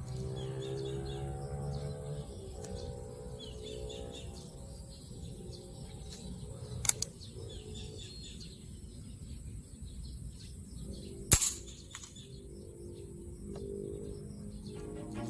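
Two sharp shots from a .177 Alpha PCP air rifle, about four and a half seconds apart, the second louder.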